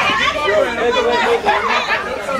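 Several people talking and calling out over one another at once, a loud jumble of overlapping voices with no single clear speaker.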